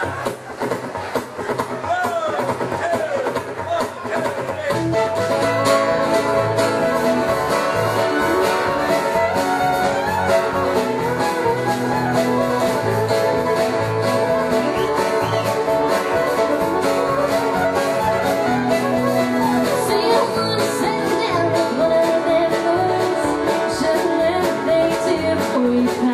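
Live country band playing a song on fiddle, acoustic guitar, electric bass and drums. It opens sparse and quieter, with the full band coming in about five seconds in and playing steadily after that.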